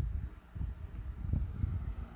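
Low, uneven rumbling handling noise on a handheld camera's microphone as it is moved about.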